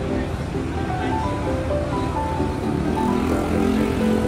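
Background music: a light melody of short held notes stepping up and down, over a steady low rumble.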